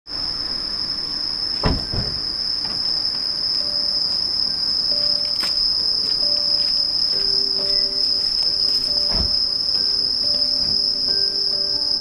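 A chorus of crickets trilling, one steady high-pitched tone held without a break. A couple of dull thumps come close together about two seconds in, and another near the nine-second mark.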